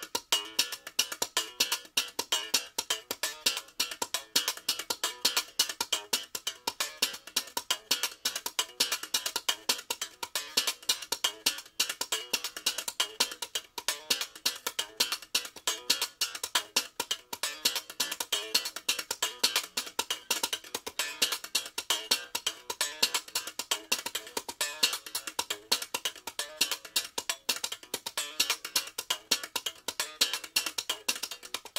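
Strandberg Boden NX7 seven-string electric guitar played in a funk slap style: a fast, steady stream of percussive thumb slaps, string pulls and left-hand hits mixed with short muted notes.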